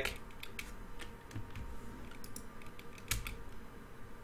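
Computer keyboard and mouse clicks, a handful of short, irregularly spaced taps over a faint steady hum.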